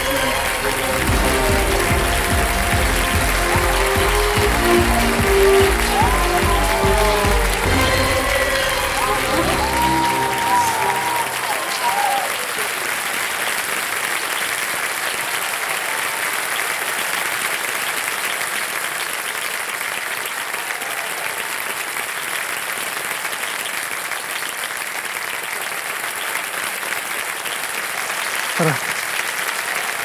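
Studio audience applauding, with upbeat music and a strong beat over it for about the first ten seconds; the music then stops and the applause goes on steadily alone.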